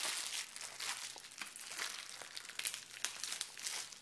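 Bubble-wrap plastic bag crinkling and crackling in the hands as it is worked open, with a run of irregular small crackles and rustles.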